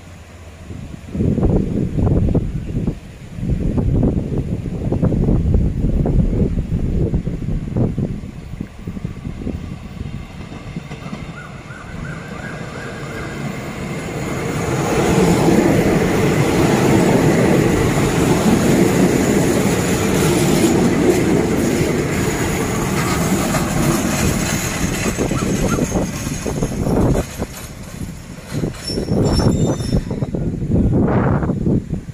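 Diesel railcar passenger train running past on the rails. The rumble of its wheels and engines is loudest for about ten seconds in the middle as the cars go by, while it pulls in to stop at the station. Gusts of wind buffet the microphone in the first several seconds.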